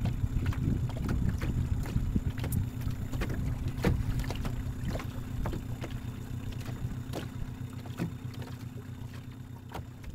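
Small outboard motor on an aluminium fishing boat running at low speed, a steady low hum, with irregular light knocks on top; the sound slowly fades out.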